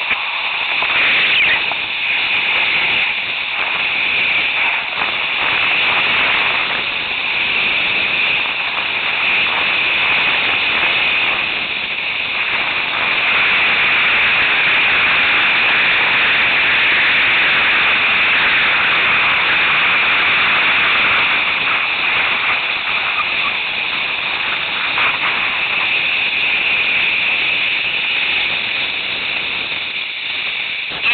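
Steady rushing hiss of sliding downhill over snow on a board or skis, with wind on the camera microphone.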